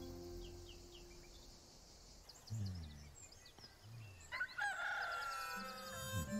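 A rooster crows once in a long call, starting about three-quarters of the way in, with faint bird chirps before it. Gentle music is fading out at the start.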